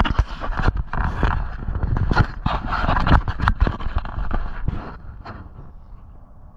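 Rapid irregular knocks and scrapes of a freshly caught peacock bass being handled, its body and tail slapping against the hand and the boat's fibreglass deck. The noise starts suddenly and dies down about five seconds in.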